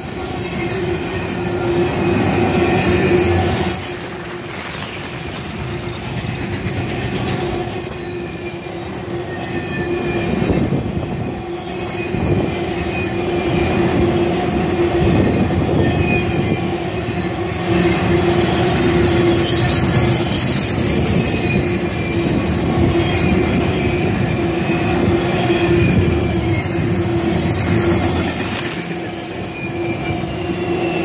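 Norfolk Southern intermodal freight train's cars of containers and truck trailers rolling past close by, steel wheels rumbling and clattering on the rails. A steady squealing tone from the wheels runs on through the passage, with a brief high-pitched squeal about twelve seconds in.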